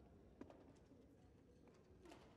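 Near silence in a sports hall, broken by one sharp tap of a badminton racket striking the shuttlecock on the serve about half a second in, followed by a few much fainter ticks.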